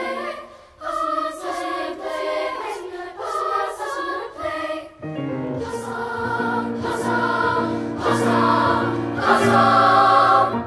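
Intermediate-school children's choir singing in close parts. About halfway in, low sustained piano notes join under the voices, and the singing grows louder toward the end.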